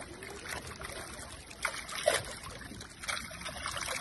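Shallow water splashing as crowded fish thrash at the surface and a hand reaches among them, over a steady trickle of running water. There are several short sharp splashes at irregular intervals.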